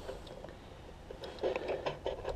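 Quiet outdoor background. About a second and a half in comes a faint rustle with a few light clicks, like clothing or gear being handled.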